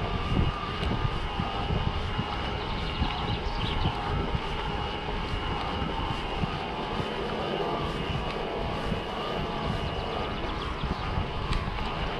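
Electric mountain bike's mid-drive motor whining steadily under assist, over low rumble from wind on the handlebar microphone and tyres on asphalt.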